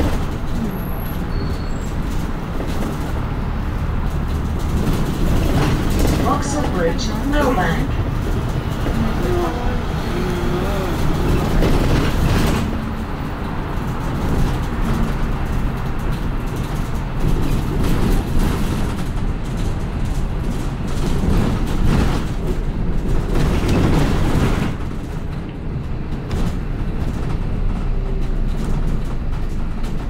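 Cabin noise of a double-decker bus under way: a steady low engine and road rumble, easing slightly a couple of times as it slows.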